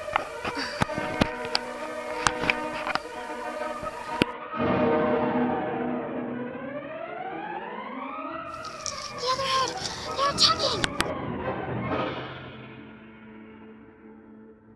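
Dramatic trailer soundtrack: layered music with sharp percussive hits, then a long swooping tone that rises for about four seconds and falls again. Everything fades down near the end.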